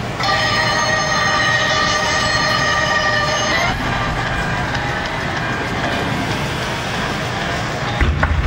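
A loud, sustained chord of several steady tones, horn-like, held for about three and a half seconds and then cut off, followed by a steady rushing noise.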